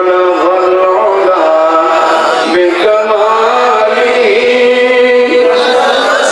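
A man chanting a slow, melodic religious line, holding long notes that bend and slide in pitch.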